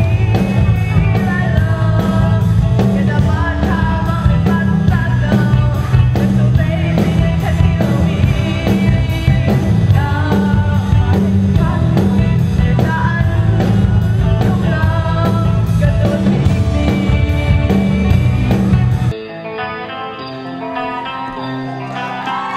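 A woman singing a song through a microphone and PA over amplified backing music with a strong bass line. About nineteen seconds in it cuts off suddenly to quieter music.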